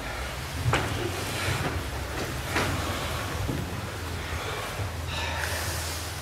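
A group of karateka performing the kata Saifa in unison: four sharp snaps of their strikes, about a second apart, over a steady low rumble.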